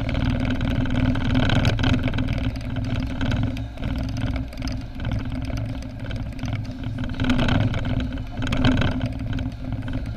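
Car driving at town speed heard from inside the cabin: steady engine hum and tyre rumble on the road.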